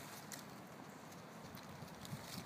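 Faint rustling and light crackles of dry fallen leaves on the woodland floor, with a few soft ticks about a third of a second in.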